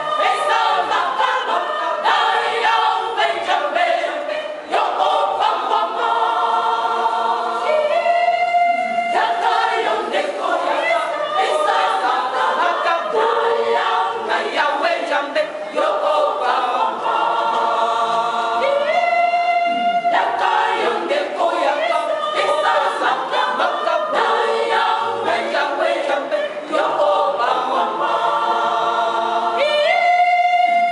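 A women's choir singing together. Three times, about eleven seconds apart, a single high note is held for about a second above the other voices.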